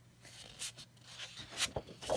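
Sheets of scrapbook paper being handled and turned over by hand: a few short rustles and swishes of paper, the loudest near the end.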